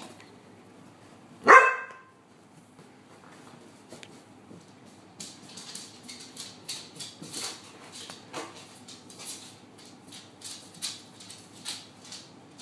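A rough collie gives one loud bark about a second and a half in. From about five seconds on comes a run of soft rustling and scuffling noises.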